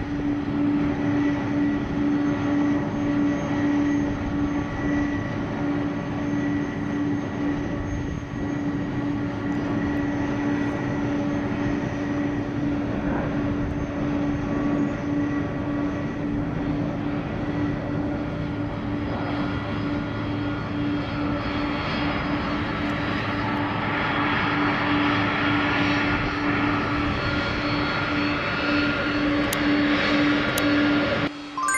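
Boeing KC-46 Pegasus tanker's twin Pratt & Whitney PW4062 turbofans running at taxi power: a steady jet whine over a constant hum, getting louder and brighter over the last several seconds.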